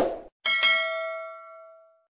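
Subscribe-button animation sound effect: a brief noise at the start, then a bell ding about half a second in that rings out and fades away over about a second and a half.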